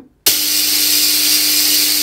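Small spark-gap Tesla coil switched on: the spark gap firing and the spark at the top terminal make a loud, hissing buzz over a steady mains hum, starting suddenly a moment in.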